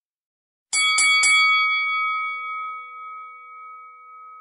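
Silence, then about three-quarters of a second in, a bell-like chime sound effect: three quick strikes about a quarter second apart, followed by one clear ringing tone that fades slowly.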